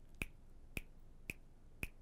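Four faint finger snaps, evenly spaced about half a second apart, keeping a steady beat for learners to repeat a phrase.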